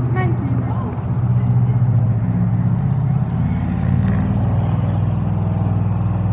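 A loud, steady low rumble that continues throughout, with a brief faint voice near the start.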